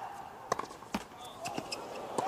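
Tennis rally on a hard court: sharp pops of the ball bouncing and being struck by the racket, two clear ones about half a second apart near the middle and lighter ticks after. A player's grunt fades out at the start.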